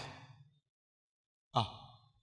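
Speech only: a man's voice trails off at the end of a phrase, then about a second of silence, then a short spoken "à" near the end.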